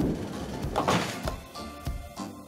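Cartoon background music with a sound effect of a bowling ball being bowled and rolling down a wooden lane, with two swells of noise about a second apart.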